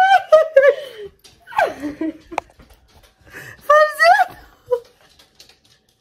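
Women laughing in several high-pitched bursts with pauses between, the last a short giggle near five seconds.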